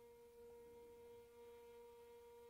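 A very faint, steady held musical note with a few overtones, sustained without change.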